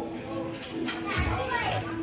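Restaurant hubbub: children's and adults' voices chattering at the tables, with a steady low tone underneath.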